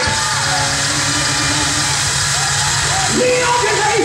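Loud live gospel music during a praise break, with a held low note and a hiss of cymbals, and voices yelling and singing over it.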